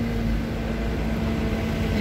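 Steady low rumble of street traffic with a constant low hum running under it.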